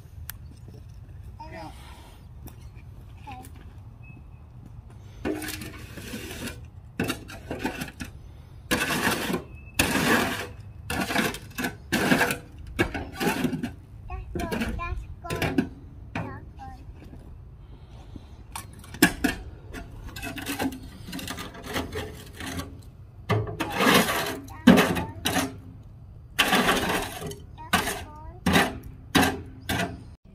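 Shovel scraping and scooping in a wheelbarrow, in short irregular strokes that come thick and fast after about five seconds, over a low steady hum.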